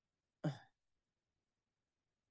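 A person clearing their throat once, a short cough-like sound about half a second in.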